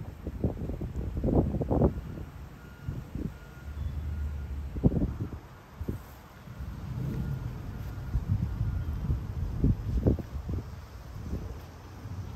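Wind buffeting the microphone as a low rumble, broken by a dozen or so irregular knocks and thumps from movement and handling.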